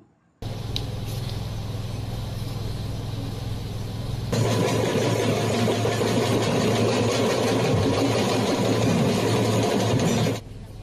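Steady background din with a low, engine-like hum, stepping up in loudness about four seconds in.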